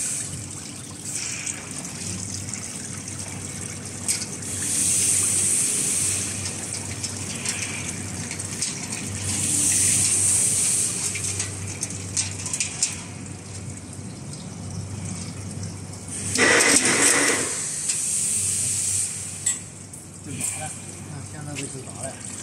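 Automatic chain link fence machine working through its weaving cycles: a steady low hum with a hissing rush every four to five seconds as the wire is fed and twisted into a spiral, the loudest and fullest rush about three quarters of the way through.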